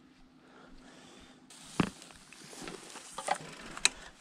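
Mostly quiet, then a sharp click about two seconds in and a few lighter clicks and rustles as a mountain bike is set moving again on a grassy trail.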